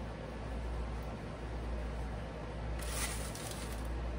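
Steady low room hum, with a brief dry rustle about three seconds in from the plastic baggie of crushed Ritz crackers as the crumbs are sprinkled over the fish.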